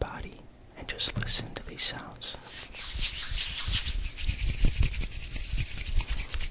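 Hands rubbing together close to a microphone: a dense, scratchy swishing that starts about halfway in, with low bumps underneath.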